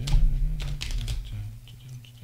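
A quick flurry of sharp clicks and clatter of hard objects close by, strongest in the first second, over a low steady hum.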